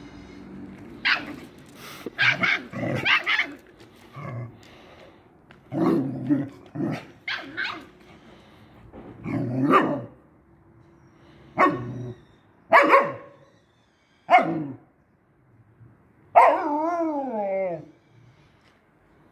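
A Siberian husky barking and growling in short, irregular bursts every second or two, ending in a longer call that falls and wavers in pitch.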